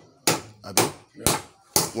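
Four sharp chopping knocks, about two a second: a blade chopping through butchered goat meat.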